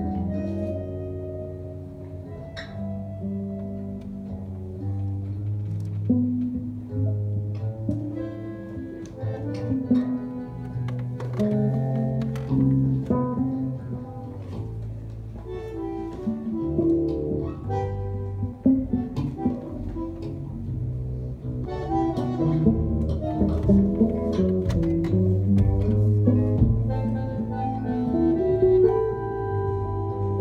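Bandoneon playing a zamba melody in a live band, over electric bass and guitar.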